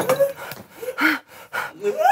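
A man's short gasps and brief voiced grunts, with a few breathy bursts scattered through it, leading into a rising vocal cry at the end.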